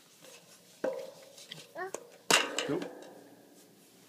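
A toddler's short vocal sounds, one rising in pitch, with a sharp knock about a second in, then a spoken 'Nope.'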